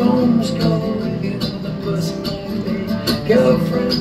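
Acoustic guitar strummed in a steady rhythm in a live solo song performance.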